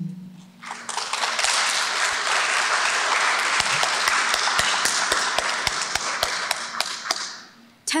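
Audience applauding. It builds up about a second in, holds steady with single sharp claps standing out, and dies away near the end.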